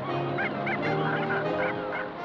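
Colony of seabirds calling, a run of short harsh cries one after another, over a held music chord.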